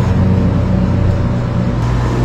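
A loud, steady low drone made of several held pitches, like an engine-rumble sound effect or a music bed laid over the picture.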